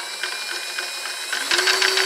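Cordless drill motor whining at a steady speed as it spins a wooden scotch yoke, with the pin and slotted wooden bar rattling and clattering as the bar slides back and forth in its guides. About a second and a half in it gets louder, with a lower hum joining and a few knocks.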